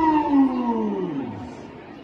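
Marching band brass playing a long downward glissando that ends a number: the pitch slides steadily lower and fades out over about a second and a half.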